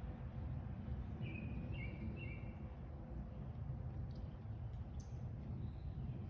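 Outdoor ambience of a steady low rumble, with a bird giving a short run of quick chirps between about one and two and a half seconds in.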